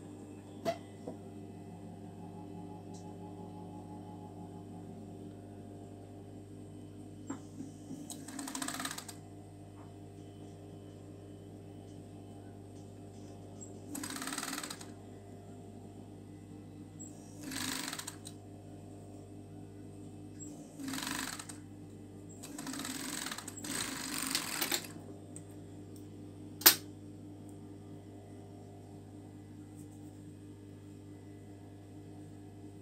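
Industrial overlock machine (serger): its motor hums steadily, and it stitches in several short bursts of a second or two as fabric is fed through. One sharp click near the end.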